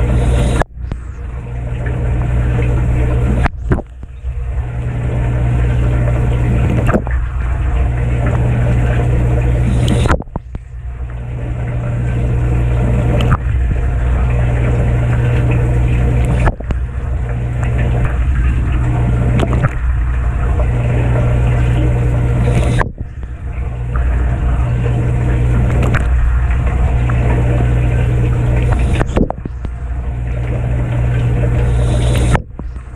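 Kenmore 587.14132102 dishwasher in its wash phase, heard from inside the tub: water from the bottom wash arm sprays and splashes over the dishes and racks over a steady hum from the wash pump motor. The splashing drops away briefly about every six seconds, then builds back up.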